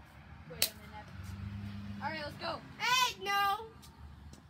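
A single sharp smack or click about half a second in, then a child's voice making two loud, high-pitched wordless sounds in the second half, each rising and falling in pitch.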